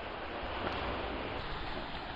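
Steady outdoor background noise: an even hiss with a low rumble underneath and no distinct event.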